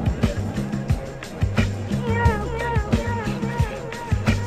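Electronic music with a steady beat and deep held bass notes; a wavering melodic line comes in about halfway through.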